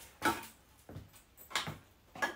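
Short knocks and clinks of glass bottles and aluminium cans being handled on a crowded table: two louder clunks, one about a quarter second in and one past the middle, with a faint tap between.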